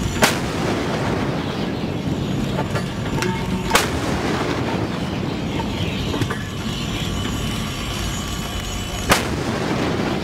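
A warship's bow deck gun, a 5-inch Mk 45 in an angular turret, firing three single rounds: sharp reports about a quarter second in, near four seconds in, and about nine seconds in, over a steady low rush.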